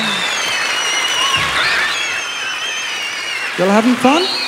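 A live band's last note dies away and an audience applauds and cheers, with high-pitched wavering cheers over the clapping. Near the end one voice calls out, rising in pitch.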